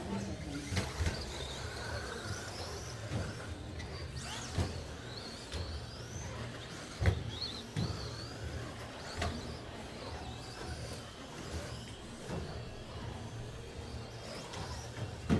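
Electric RC stock trucks (Traxxas Slash) racing: high motor whines rise and fall as they accelerate and brake, with several sharp knocks over a steady low hum.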